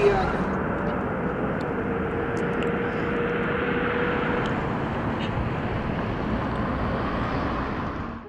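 Steady outdoor background noise, an even rushing hiss, with a faint steady tone for a few seconds in the middle.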